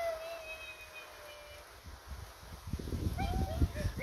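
A thin, high-pitched squeaky call held for about a second and a half with a slight waver, then two short squeaks a little after three seconds in. Low rumbling noise runs under the squeaks near the end.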